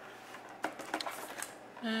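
Clear plastic packaging tray handled in the fingers: a few light clicks and crackles of thin plastic.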